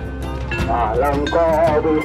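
Street procession drum band: a bass drum and hand drums beaten in an irregular pattern, under a wavering melody line that bends up and down.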